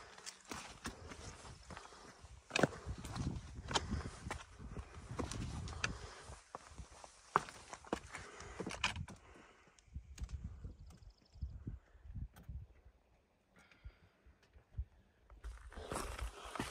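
A hiker's footsteps on a rocky trail: irregular knocks and scrapes of boots on stone over a low rumble, thinning to a few scattered clicks after about ten seconds.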